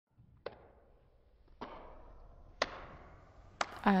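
Four sharp hits about a second apart, each followed by a short ringing, reverberant tail.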